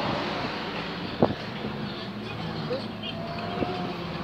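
A car engine running and moving along the street, with one sharp knock about a second in and a thin high tone near the end.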